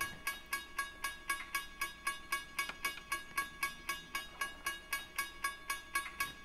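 Railroad crossing signal bell ringing steadily, about four strikes a second.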